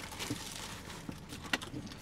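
Plastic bag and food wrappers rustling while two people eat, with a few small ticks and one sharp click about one and a half seconds in.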